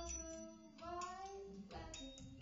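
A woman singing held, gently gliding notes into a microphone, over a sparse electronic backing with deep low pulses and clicks.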